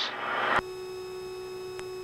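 A brief hiss, then a click about half a second in and a steady low electronic tone with faint higher overtones, holding unchanged, with another faint click near the end.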